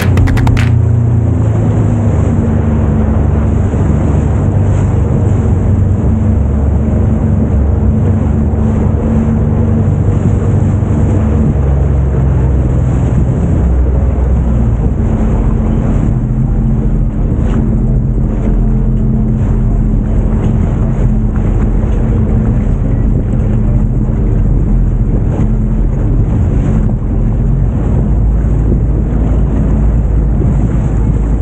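Sea-Doo GTX 300 personal watercraft running on open water: a steady engine drone with a constant low hum, mixed with wind rumble on the microphone and splashing water.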